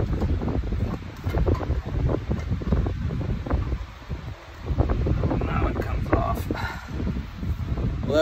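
Rustling of clothing brushing close against the microphone, with scattered clunks and clicks of metal parts as a power steering pump is worked loose and lifted out of an engine bay.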